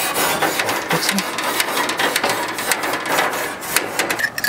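Grill brush scrubbing the hot cast-iron grate of a Weber Genesis II gas grill in rapid back-and-forth strokes, a fast, continuous scraping: the preheated grate being cleaned before it is oiled.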